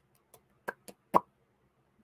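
Four short, sharp clicks within about a second, the last the loudest.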